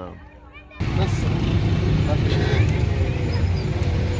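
After a brief lull, a sudden cut about a second in to the steady low rumble of a car driving in traffic, heard from inside the car, with a faint tone that slowly falls in pitch.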